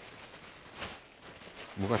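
Plastic wrapping rustling and crinkling faintly as a packaged item is opened by hand, with a brief louder rustle just under a second in.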